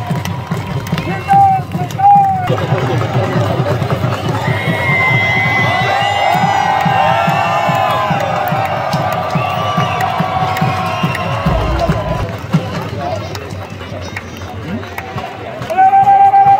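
Large crowd of spectators cheering and chanting over loudspeaker music. Two short, loud held notes come about one and two seconds in.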